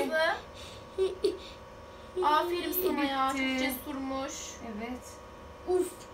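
A young boy's pained vocal cry after an injection: one drawn-out moan about two seconds in, lasting nearly two seconds, with a short vocal sound near the end.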